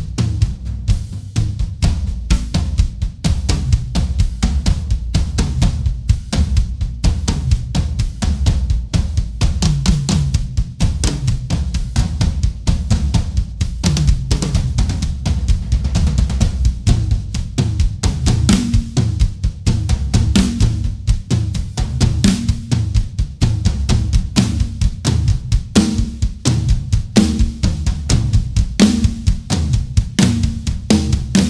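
Two acoustic drum kits played in turn in dense, fast solo phrases of bass drum, snare and cymbals. Tom fills stand out in the second half.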